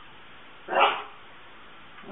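A dog barks once: a single short, sharp bark about three quarters of a second in.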